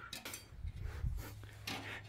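Faint handling noise: a few light clicks and rubs over a low steady hum.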